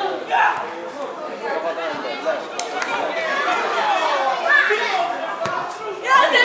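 Many voices talking and calling out at once, overlapping and indistinct, with a couple of brief sharp knocks.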